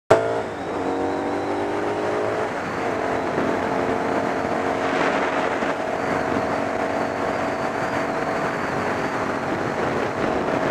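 Motorcycle engine running under way, with wind noise on the microphone. Its pitch climbs for the first couple of seconds, then drops and holds steady.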